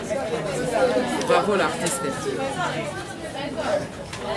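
Speech only: people talking, with no other sound standing out.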